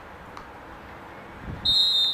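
Referee's whistle: one sharp, high, steady blast of about two-thirds of a second, starting near the end, signalling the kick-off.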